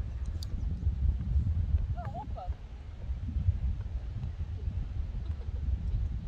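Wind buffeting the microphone: a low, uneven rumble throughout, with a short murmur of a voice about two seconds in.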